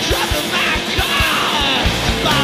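Garage punk band playing a fast song, with a fast, steady drumbeat and yelled vocals.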